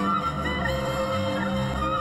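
Orchestral instrumental music: a melody with short pitch slides over sustained chords and a steady, pulsing bass line.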